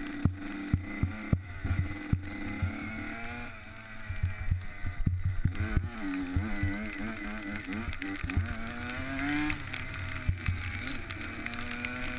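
Motocross bike engine being ridden hard, its pitch rising and falling with throttle and gear changes, including a long climbing rev that drops away sharply about three-quarters of the way through. Frequent sharp knocks run through it.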